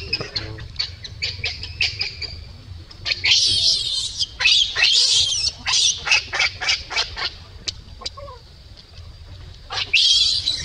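A newborn macaque crying: short, softer squeaks at first, then a run of loud, shrill, high-pitched squeals about three seconds in that lasts several seconds, with another burst right at the end.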